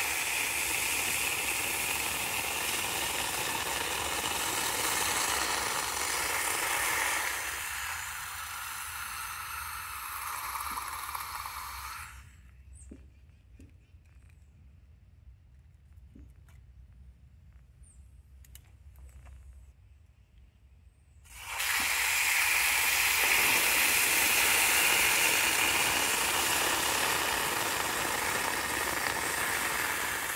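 Hot cast aluminum quenched in a bucket of water, hissing and sizzling loudly as the water boils against the metal. The hiss dies away about twelve seconds in, leaving a quiet stretch with a few light clicks, then starts up loud again around twenty-one seconds in as hot metal goes into the water once more.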